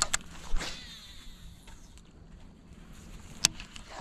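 Baitcasting reel during a cast: a couple of clicks, then the spool whirring as line pays out, its whine falling as it slows. A single sharp click near the end.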